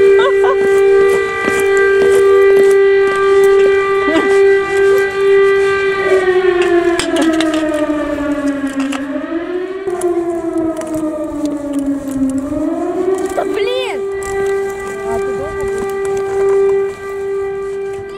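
Civil-defence air-raid siren sounding the all-clear: a loud steady tone that sags and dips in pitch twice about midway, then holds steady again.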